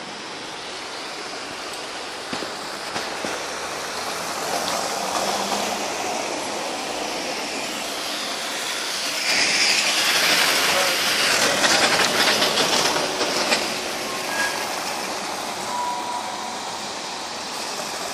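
City street traffic on a slushy road: a steady wash of tyre noise that swells loudest about halfway through, with many small clicks, then eases off.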